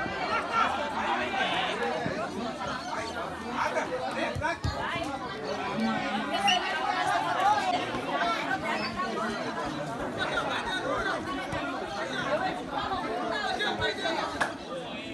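Many overlapping voices of footballers and onlookers calling and chattering across an open pitch during play, without clear words.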